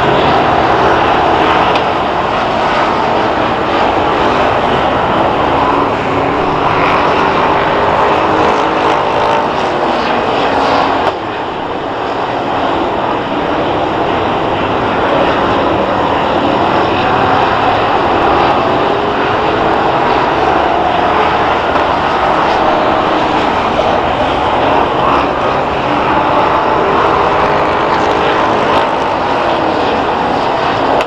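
A field of Hoosier Stock race cars running on a dirt oval, their engines a loud steady mass of sound whose pitch rises and falls as the cars accelerate and lift through the turns. The level dips suddenly about eleven seconds in.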